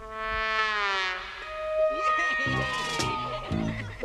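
Brass-led soundtrack music: a note slides down in pitch over about the first second, then held notes follow, with lower parts coming in during the second half.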